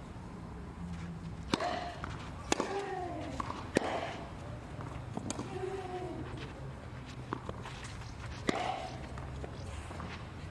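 Tennis rally on a clay court: sharp pops of rackets striking the ball, roughly a second or so apart, with short vocal grunts from the players on several shots.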